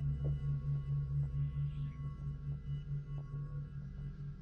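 Low synth drone from a thriller score, throbbing about four times a second, with thin high tones held above it.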